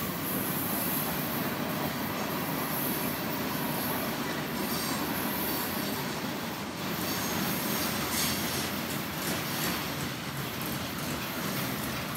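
Freight train of covered hoppers and tank cars rolling past close by: a steady rumble of steel wheels on the rails that starts suddenly and holds at an even level.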